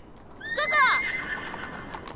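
A horse whinnies once, loudly, about half a second in, its call falling in pitch and then trailing off in a held note.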